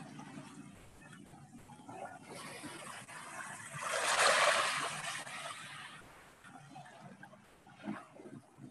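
A passage of a recorded sound-art piece played over a video call: a faint low murmur, then a rush of noise that swells and fades around the middle.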